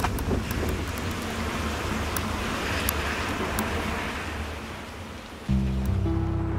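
A steady rushing noise over a low drone, with scattered faint clicks. Acoustic guitar music comes in suddenly about five and a half seconds in.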